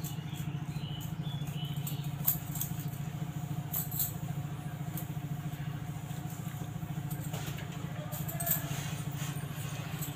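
Steady low machine hum with a rapid flutter, like a small motor running, with three light clicks about two, four and eight and a half seconds in.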